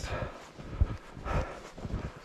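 Footsteps in snow at a steady walking pace, about two steps a second.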